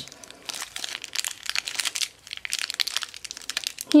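A crinkly plastic blind-bag wrapper crackling in irregular bursts as it is squeezed and twisted to push the toy figure out, with a short lull about two seconds in.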